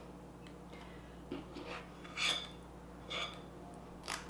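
Faint scraping and clicking of a metal cookie scoop working sticky dough onto a silicone baking mat, with two slightly louder scrapes about two and three seconds in.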